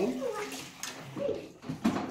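A child's voice, then a short click near the end as a French-door refrigerator door is pulled open.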